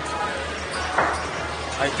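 Steady din of a casino floor with background music, and a single thump about a second in.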